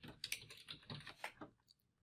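Faint computer keyboard typing: a quick run of key clicks that stops about one and a half seconds in.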